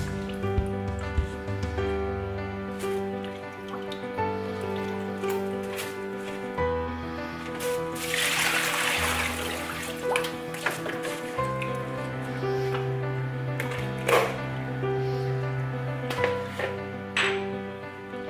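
Background music throughout. About eight seconds in, water is poured out of a plastic bowl into a stainless-steel sink in a splash lasting about two seconds. A few light knocks follow later on.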